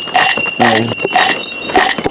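Small bells ringing in a steady beat, about two strikes a second, with a short bleat-like vocal cry in between.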